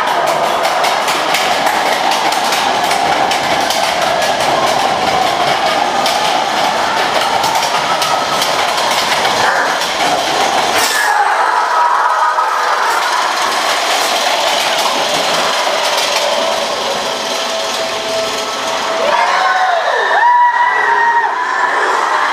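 Matterhorn Bobsleds car running through the dark at the start of the ride: a steady rumble with a rapid clatter from the track. A short pitch that bends up and down comes in near the end.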